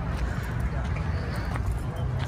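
Footsteps on a paved path under a steady low rumble of wind on a phone microphone.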